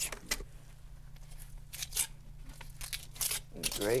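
A steel trowel scooping stiffening hydraulic cement out of a plastic bucket and pressing it against a concrete wall: a few short scrapes and taps, spread out, over a low steady hum.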